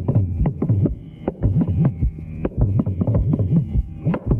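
Mridangam and kanjira playing fast rhythmic strokes in a Carnatic percussion solo, with the bass pitch bending up and down between strokes.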